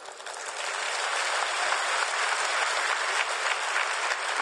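Audience applauding, swelling over the first second and then holding steady.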